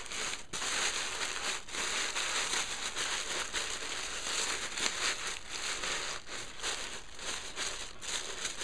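Tissue paper crumpling and crinkling as it is folded and stuffed into a small treat box. The crinkling is continuous and full of small crackles, with two short breaks in the first two seconds.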